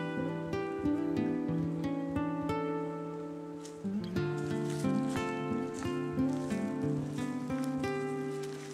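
Background music played on acoustic guitar: plucked notes over ringing chords, changing chord about four seconds in.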